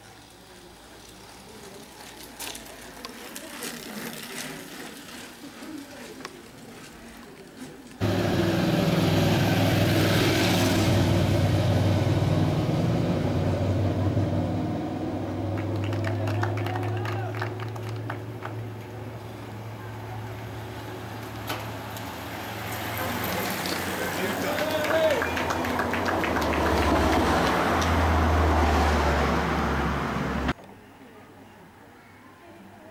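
Faint outdoor ambience, then, starting suddenly about eight seconds in, a motor vehicle's engine running loud and steady close by as the race passes, its low hum dropping in pitch near the end. Voices are mixed in.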